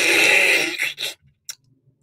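A person slurping a drink loudly from a small carton for about a second, then a short second sip and a single click before it goes quiet.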